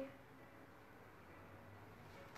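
Near silence: faint room tone with a low hum.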